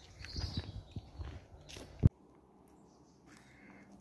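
Footsteps crunching on a dirt woodland path, irregular and soft, with a faint bird chirp near the start. About two seconds in they stop abruptly with one sharp click, and near silence follows.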